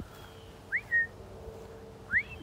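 A person whistling to call a dog: a quick upward-sliding whistle followed by a short level note, about a second in.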